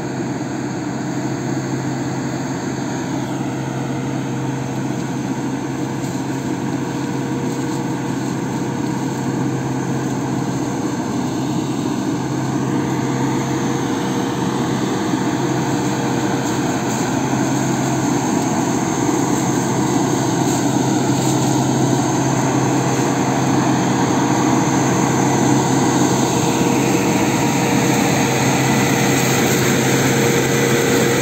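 Farm tractor running with its mounted pesticide sprayer, a steady engine hum that grows gradually louder as the tractor approaches.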